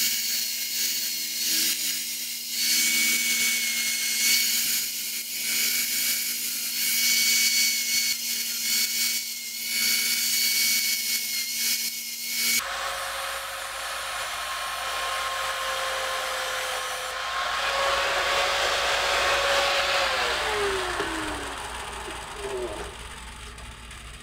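Angle grinder running, its disc grinding down the metal end plate of a hatchet held in a vise, with a steady high whine. A little past halfway the sound changes abruptly, and near the end the grinder's whine falls in pitch as it spins down.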